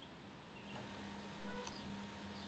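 Quiet pause: low background hiss with a faint steady hum and a few very faint small sounds.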